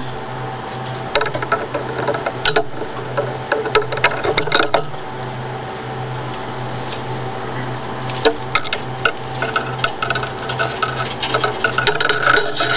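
Hands peeling slit plastic insulation off 14-gauge solid copper wire, giving scattered clicks and crinkles, over a steady low hum.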